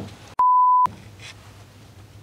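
A censor bleep: one short, steady, high beep lasting about half a second, with all other sound cut out beneath it.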